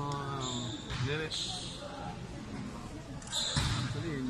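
Basketball bouncing on a gym court, with a sharp thud about three and a half seconds in and a few brief high squeaks, under faint voices in a large hall.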